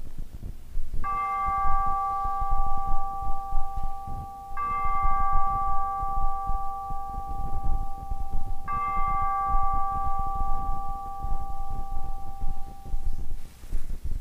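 Altar bell struck three times, each stroke ringing clear for several seconds before fading, marking the elevation of the host at the consecration.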